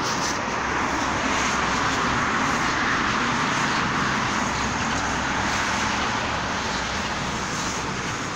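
Steady traffic noise from a nearby road, a little louder through the first half and easing off toward the end.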